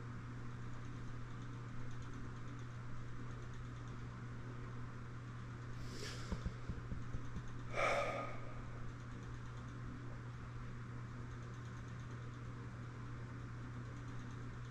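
Quiet room tone with a steady low hum, broken by two brief soft sounds about six and eight seconds in.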